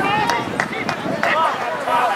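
Several voices shouting and calling out at an outdoor lacrosse game in short overlapping calls, with scattered sharp clacks.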